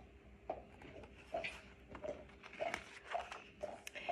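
Pages of a hardcover picture book being turned and handled: a scatter of faint, short clicks and paper rustles over a faint steady hum.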